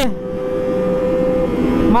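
Kawasaki ZX-25R's inline-four engine running at steady revs while riding, a steady hum over low road and wind rumble.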